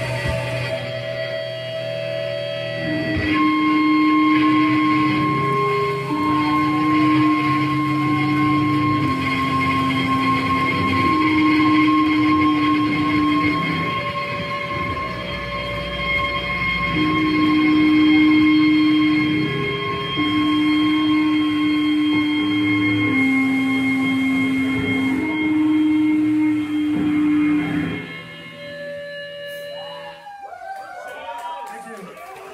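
Amplified electric guitar ringing out in feedback: steady high whining tones over a slow series of long held low notes, each about two seconds, with no drums. It fades out about two seconds before the end.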